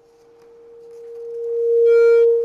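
Public-address microphone feedback: a single steady mid-pitched howl that swells louder throughout and turns harsher as it peaks near the end.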